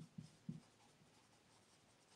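Very faint dry-erase marker strokes on a whiteboard: a few short strokes in the first half second, then near silence.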